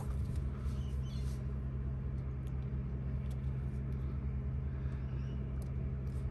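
A steady low mechanical hum, with a few faint, light clicks over it.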